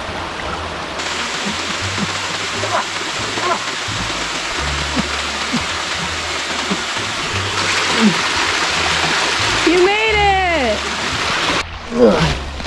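A small creek waterfall splashing and running steadily. About ten seconds in, a person's voice makes one short sound that rises and then falls in pitch.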